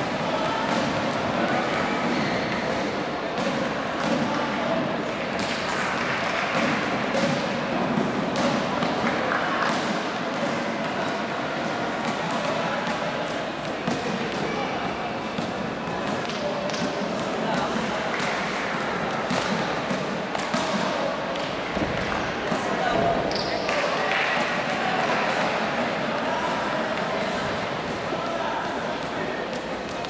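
Echoing gymnastics-arena ambience: indistinct chatter and voices in a large hall, broken by repeated thuds and knocks from gymnasts on the apparatus and landing on the mats and sprung floor.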